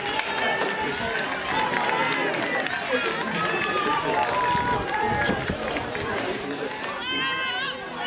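Pitchside sound at a football match: players shouting and calling to one another over spectators' chatter, many voices overlapping. A louder, high-pitched call comes near the end.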